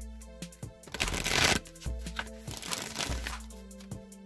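A deck of oracle cards being shuffled by hand: two bursts of shuffling rustle, the louder about a second in and another near three seconds, over background music with a steady beat.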